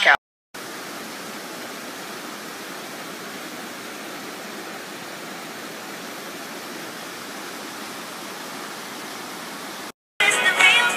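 Creek water rushing and cascading over rocks: a steady, even rush that cuts in suddenly about half a second in and cuts off just before the end.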